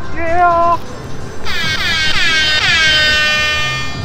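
Handheld novelty "HYPE" sound button playing a recorded air horn effect: starting about a second and a half in, several quick blasts that each slide down in pitch, running into a longer held blast that stops just before the end.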